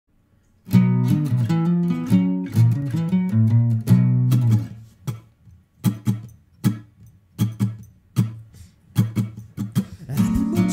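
Acoustic guitar strummed, starting just under a second in. It plays ringing chords for about four seconds, then switches to short, cut-off chord stabs about twice a second.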